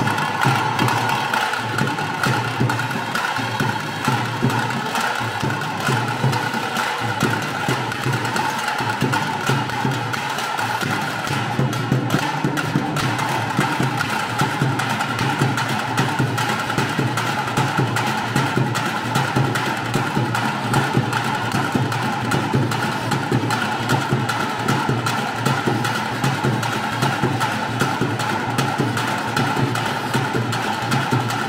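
Fast, unbroken drumming on tase drums, the stick-beaten drums that accompany the Tulu tiger dance, with a steady ring over the rapid strokes.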